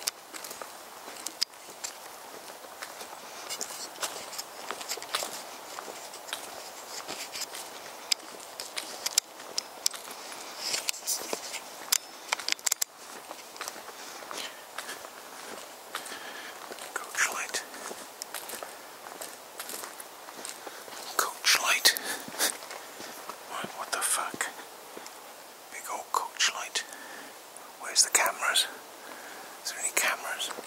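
Footsteps and handling rustle of one person walking, with many small clicks, and short bursts of whispering in the second half.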